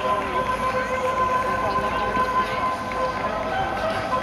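Murmur of distant spectators' voices, with a steady droning tone held unbroken throughout.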